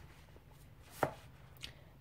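A book knocking against a bookshelf as it is slid in and another pulled out: one sharp tap about a second in, then a fainter tick.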